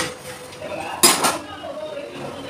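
Stainless-steel kitchen utensils being handled. There is a click at the start and a short, loud metallic clatter about a second in.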